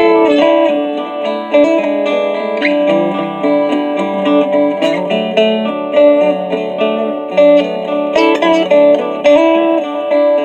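1945 Harmony Monterey archtop guitar played through its K&K pickup, a boost pedal and a small practice amplifier with delay: picked notes and chords over a looped guitar part, the notes overlapping and ringing on.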